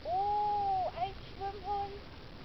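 A high-pitched, drawn-out vocal call lasting nearly a second, followed by a few short, higher notes.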